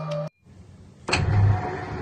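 A window roller shutter being raised, a steady rumble that starts suddenly about a second in, just after a short burst of music cuts off.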